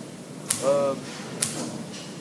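Pulsair mixing wand firing short bursts of compressed air into fermenting grape must: two sharp pulses about a second apart.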